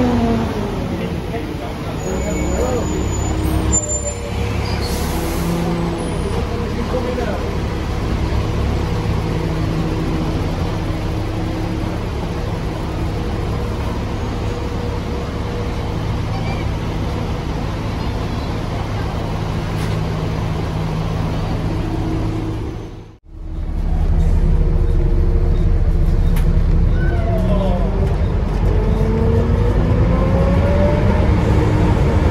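Volvo B7TL double-decker bus's diesel engine idling with its cooling fans blaring, a short hiss of air about four seconds in. After a sudden cut about two-thirds through, the same bus is heard from inside as it pulls away, the engine note rising.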